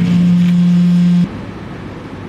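A steady low hum that cuts off suddenly a little over a second in, leaving faint background noise.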